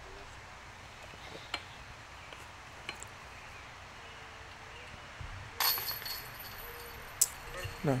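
A putted disc hitting the chains of a disc golf basket about two thirds of the way in: a metallic chain jingle lasting about a second, then a sharp clink. The putt is made, for a birdie.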